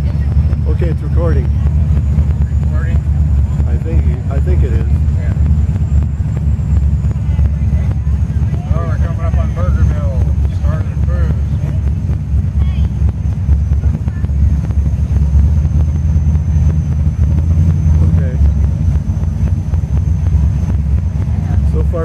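Engine of a 1967 Oldsmobile convertible running in a steady low rumble as the car cruises slowly. Voices of people are heard here and there over it, loudest about nine to eleven seconds in.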